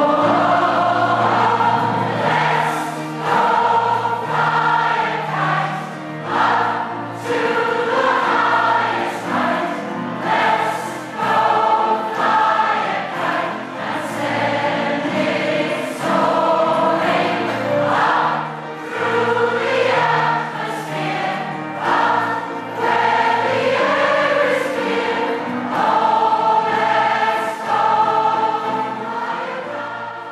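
A large community choir, mostly women's voices, singing a song together, with sustained low backing notes under the voices.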